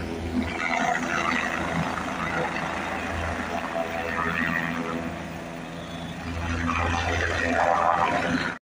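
Helicopter running on the ground across the valley: a steady low engine-and-rotor hum that swells twice, with faint voices over it.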